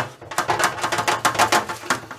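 A crisp, oiled börek sheet sliding across a plastic lid onto a metal baking tray, making a rapid run of dry crackles and scrapes.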